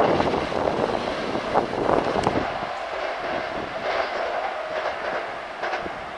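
Hankyu 5300 series electric train pulling out, its wheels clattering over the rail joints and points. The sound fades steadily as the train draws away.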